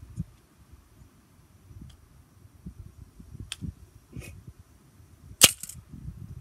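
A Victor wooden snap mouse trap springing shut on a stick set in it: one sharp, loud crack near the end. A lighter click comes a couple of seconds earlier.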